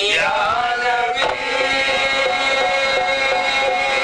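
Live qawwali: a male lead voice sweeps into one long held note over a harmonium's steady chord, with a single sharp hit about a second in.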